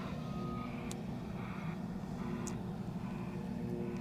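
Steady low mechanical hum, engine-like, with a short faint tone near the start and a couple of faint ticks.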